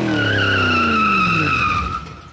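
Car sound effect: tyres screeching with a steady high squeal while the engine note falls in pitch, both fading out near the end.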